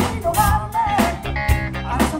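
Live funk band playing a groove: a drum beat of about two hits a second over a steady bass line, with guitar and vocals.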